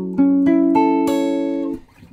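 Electric guitar (red semi-hollow-body) playing an F sharp minor 7 chord: struck about a fifth of a second in and left to ring, with a higher note sounding a moment later, then damped to near silence shortly before the end.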